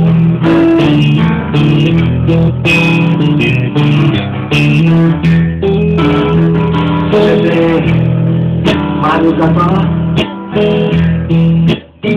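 Live instrumental passage of a slow song: guitar and upright piano playing together with no singing. The sound drops out briefly near the end.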